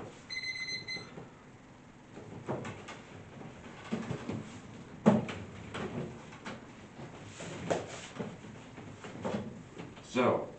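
Electronic alarm beeps sound for about the first second, then soft knocks, creaks and rustles as a person shifts about and sits up on a wooden bench, the sharpest knock about halfway through.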